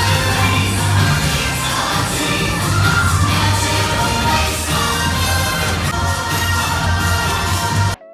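Magic Kingdom cavalcade music playing loud from the parade float's sound system, with a heavy, steady bass line, over a crowd of onlookers.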